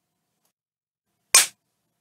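A single short, sharp click about one and a half seconds in, with silence around it.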